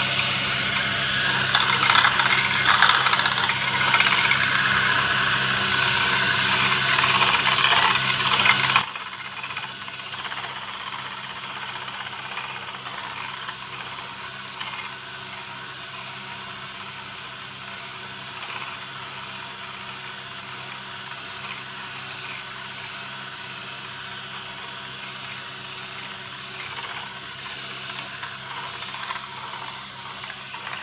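Electric hand mixer running steadily, its twin beaters whisking mayonnaise ingredients in a plate. The sound drops abruptly in loudness about nine seconds in and continues steadily at the lower level.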